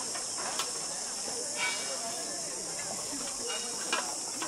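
Steady high-pitched hiss of an insect chorus in the forest canopy, with a few light clicks and knocks from the rope-and-plank walkway underfoot.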